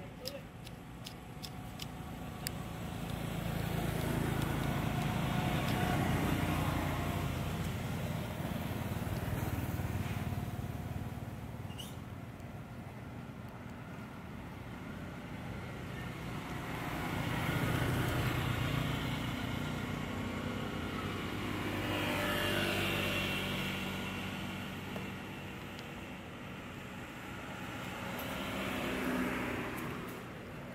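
Road traffic: several motor vehicles pass one after another, each engine sound swelling and fading.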